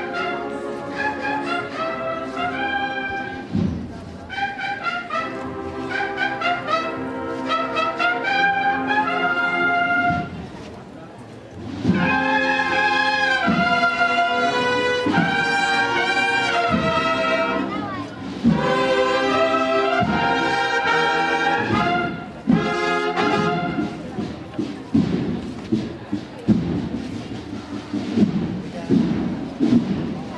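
Brass band playing a Holy Week processional march. There is a brief quieter gap about ten seconds in, then the full band comes back louder with drum beats.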